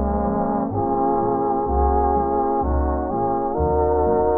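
Instrumental passage of an old swing-era dance band recording: the band holds sustained chords that change about once a second over low bass notes. It has the dull, muffled sound of an old recording, with no high end.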